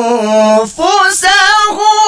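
A male qari chanting Qur'anic recitation in the melodic contest style, in a high register. A long held note ends about two-thirds of a second in, followed by a brief breath, then a new phrase starts on a higher pitch with a wavering, ornamented melody.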